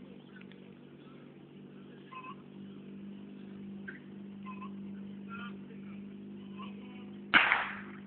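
A small engine idling steadily, then a single sharp bang about seven seconds in, typical of the starting-pistol shot that opens a fire-sport attack.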